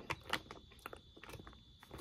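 Faint, scattered crunchy crackles and clicks of fried pork rinds and their snack bag, with a faint steady high tone behind them.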